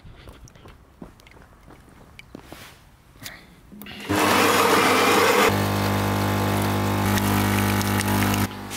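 Fully automatic espresso machine starting a brew. After a few quiet seconds with faint clicks, it grinds loudly for about a second and a half. Then its pump hums steadily as the coffee pours.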